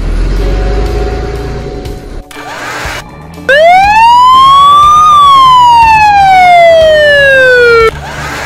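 A loud, siren-like electronic sound effect: a single tone rises over about a second and a half, then glides slowly back down over about three seconds and cuts off sharply. Before it there is a quieter, noisier effect with a low rumble.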